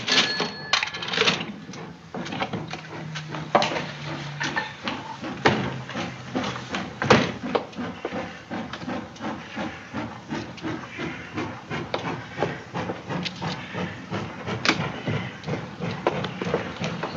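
A steady run of small clicks and taps, irregular and close together, with a faint low hum for a few seconds near the start.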